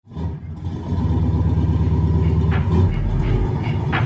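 Car engine rumbling at a steady idle, coming in abruptly out of silence, with a sharp hit about two and a half seconds in and another near the end.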